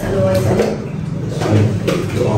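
Several voices talking at once, indistinct: students asking and answering questions in pairs during classroom speaking practice.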